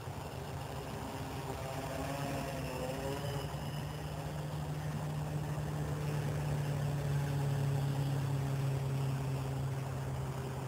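Electric motors and propellers of a small quadcopter whirring, with a steady low hum. The pitch wavers as the rotor speeds shift in the first few seconds, then holds while the sound grows gradually louder.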